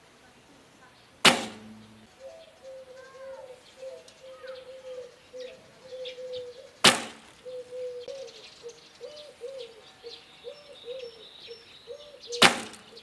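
Two shots from a barebow recurve: the string is released with a sharp snap about a second in and again near seven seconds, as each arrow leaves the bow. Birds sing quietly in the background between the shots.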